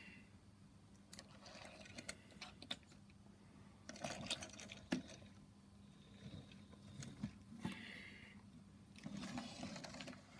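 Faint handling noise: scattered light clicks and short rustles over a low steady hum.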